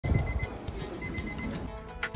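Digital alarm clock beeping: two quick runs of high beeps about half a second apart, over a low rumble.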